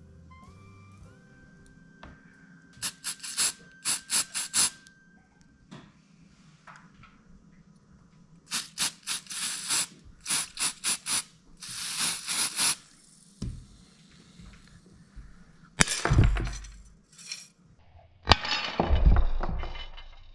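Aerosol spray can hissing in groups of short bursts, then one longer burst, sprayed onto glass that is still hot. Near the end come two louder thumps with handling noise. Faint background music plays in the first few seconds.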